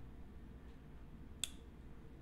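A single sharp metallic click about one and a half seconds in, from a Leatherman Sidekick multitool as its knife blade is swung open. Faint room tone otherwise.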